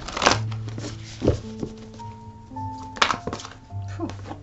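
Soft background music of long held notes, over a tarot deck being shuffled and handled: a sharp riffle of cards about a quarter of a second in, the loudest sound, a duller knock about a second later and another sharp riffle about three seconds in.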